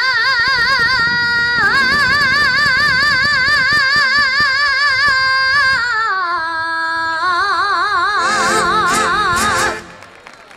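A woman singing a solo Navarrese jota in long held notes with wide vibrato. Partway through the melody glides slowly down, then climbs to a final held note that stops abruptly near the end, closing the song.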